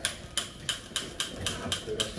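Hand-held trigger spray bottle squirted rapidly onto the floor, about four short hissing squirts a second, to feed a ring of burning liquid that is dying out.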